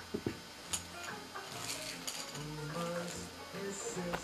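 Background music from a television, steady pitched notes following one another, with a few light clicks in the first second.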